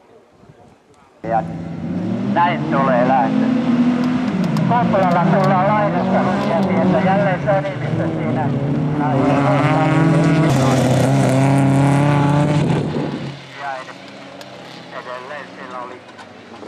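Several folk-race car engines revving hard together as a pack of cars races on a gravel track. The sound comes in suddenly about a second in, with engine pitches rising and falling over one another, and drops to a fainter engine near the end.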